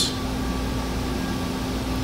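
Steady room noise: an even hum and hiss with a constant low tone running under it, and no distinct events.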